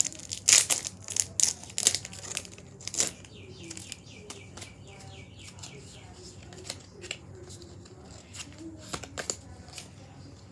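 Foil Pokémon card booster pack being crinkled and torn open. The crinkling is loud in the first three seconds, followed by a quicker run of fainter ticks and a few sharp crackles near the end.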